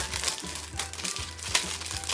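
Candy packaging crinkling in a series of irregular crackles as it is handled and opened, with one sharper crackle about one and a half seconds in.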